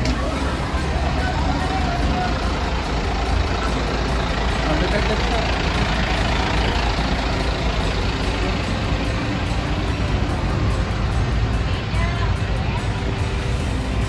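Steady rumble of a diesel container truck running in a port yard, with voices underneath.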